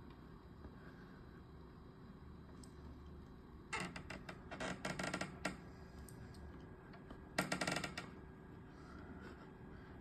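Computer mouse on a desk clicking in quick runs of sharp ticks: a short run a little under four seconds in, a longer one around five seconds, and another just before eight seconds.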